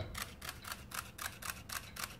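Olympus OM-D E-M10 Mark II shutter firing in a continuous burst with the shutter button held down in low sequential mode: a rapid, even run of clicks.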